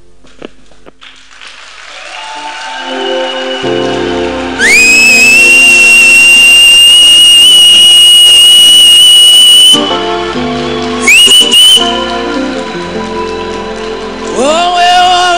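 A loud, piercing whistle swoops up and holds one steady high note for about five seconds, then a second short whistle follows. Both are over background music that swells up behind them.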